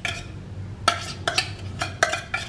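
Metal fork scraping tuna out of an opened tuna can, with several sharp clinks of the fork against the can's rim and sides.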